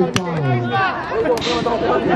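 Overlapping voices of spectators and players talking at once around an outdoor basketball court, with two sharp knocks: one just after the start and one a little past halfway.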